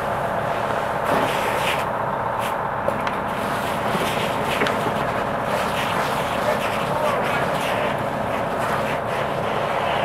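Fire apparatus engine and pump running steadily at speed, with the rushing of a hose stream on a burning car and faint voices under it.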